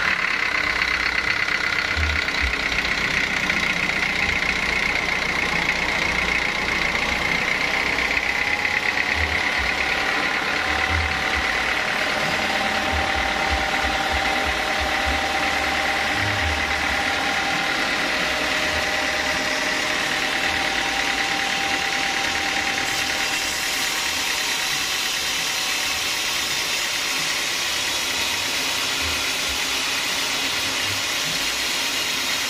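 Stationary diesel engine running a sawmill band saw: steady engine clatter under a high whine that drifts slightly in pitch. Near the end a hiss joins in as the blade starts cutting through a log.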